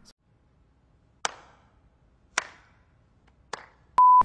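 Three slow hand claps about a second apart, each with a short echoing tail, against dead silence: a sarcastic slow-clap sound effect.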